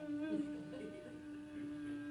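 A man's voice humming one steady held note, a vocal imitation of a weak shofar blast; the pitch drops slightly about a second in.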